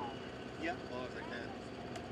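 Distant single-engine piston engine of a small WWII liaison plane running steadily as it rolls along the runway, with faint bits of voices nearby.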